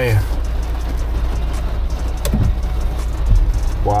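A van's engine running steadily, heard from inside the cabin as a low rumble, with light rain on the windshield.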